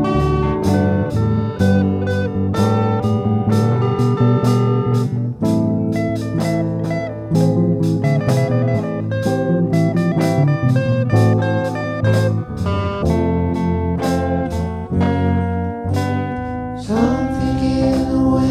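Electric guitar solo on a Stratocaster-style guitar over a full band backing of drums and bass: a slow rock instrumental break between sung verses.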